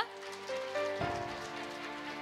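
Audience applauding, with background music playing steady held notes that step up in pitch twice.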